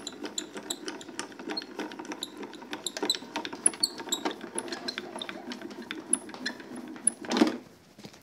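Spellbinders Grand Calibur hand-cranked die-cutting and embossing machine being cranked, its gearing clicking rapidly over a low rumble as the plate sandwich rolls through to emboss a die-cut card. A brief, louder scrape comes near the end.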